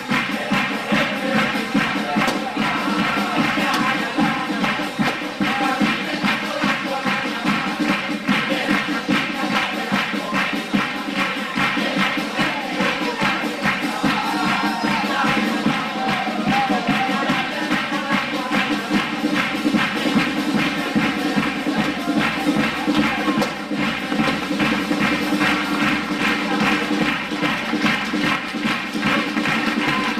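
A chirigota, a Cádiz carnival comic choir, singing together over guitar and drum accompaniment with a steady beat.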